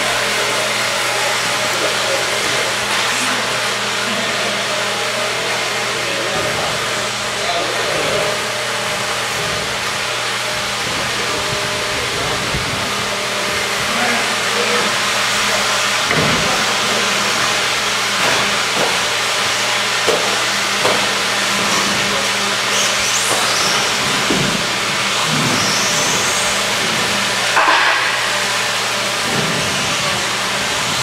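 Electric RC buggies running on an indoor dirt track: a steady high whir, with a few brief high whistling glides in the second half, over low electrical hum and background voices.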